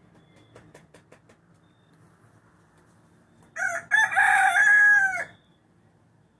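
A bantam (garnizé) rooster crowing once, starting about three and a half seconds in: a short opening note, then a long held crow of about a second and a half.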